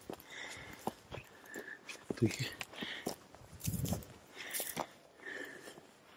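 Footsteps on dry grass and stony ground, a scattering of short crunches and clicks, with faint low murmuring in between.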